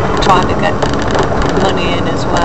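Steady road and engine noise inside a moving car's cabin, with snatches of a voice talking over it.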